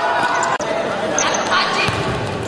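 Live futsal game sound in an echoing indoor hall: players shouting, and a sharp ball strike about half a second in.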